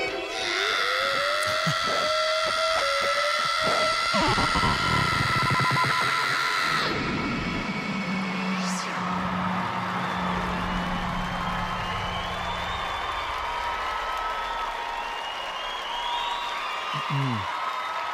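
Live baroque-metal music ending on held notes that cut off about seven seconds in, followed by a festival crowd cheering.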